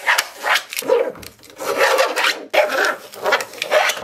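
Clear plastic drawer organiser trays scraping and rubbing against each other and the drawer bottom as they are shifted into place, in a series of short scrapes.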